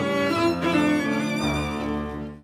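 Small string ensemble of violins, cello and double bass playing a sustained passage in rehearsal, the notes changing about half a second in and a deep bass note entering past the middle. The tempo is a little slow, in the teacher's view.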